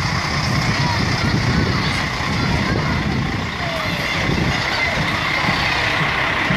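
Diesel engine of a Mercedes-Benz Axor lorry running as it rolls slowly past close by, a steady low rumble, with crowd and children's voices over it.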